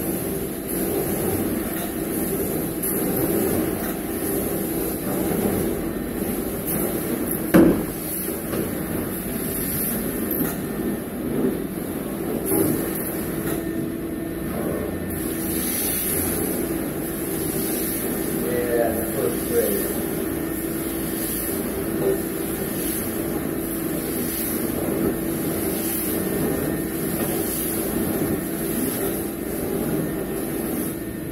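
Carpet-cleaning extraction wand, a 14-inch titanium wand fed by a small truck-mount unit, pulled in strokes across carpet. The suction runs as a steady drone with a constant hum and a high hiss that swells and fades in a regular rhythm. A single sharp knock comes about seven and a half seconds in.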